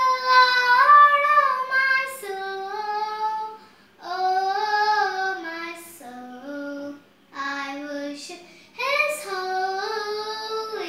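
A young girl singing solo with no accompaniment, in long held notes that slide between pitches, pausing briefly for breath about four, seven and nine seconds in.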